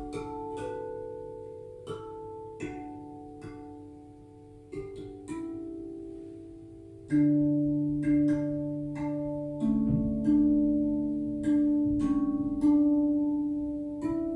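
RAV drum, a steel tongue drum, played with the fingers: single notes struck at a slow, even pace, each ringing on with a long sustain. About halfway through the playing grows louder and fuller, with deep bass notes held under the melody.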